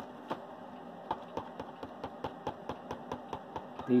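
Quiet room with faint, rapid, regular clicking, about four to five short clicks a second.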